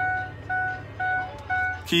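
2004 Ford Explorer's key-in-ignition warning chime dinging about twice a second, four evenly spaced chimes: the key is left in the ignition with the door open.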